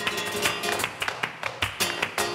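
Live flamenco music between sung lines: acoustic guitar playing with many sharp, irregular percussive strikes.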